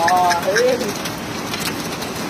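Steady rush of floodwater, with a short pitched call right at the start and a second, lower rising-and-falling call about half a second in.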